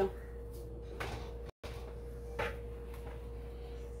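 Quiet kitchen room tone with a steady faint hum and two soft knocks, about a second in and again near two and a half seconds, as masa balls and a paper sheet are handled on a tortilla press. The sound cuts out completely for a moment near the middle.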